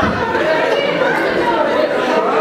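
Audience chatter: many voices talking over one another at once, with no one voice standing out.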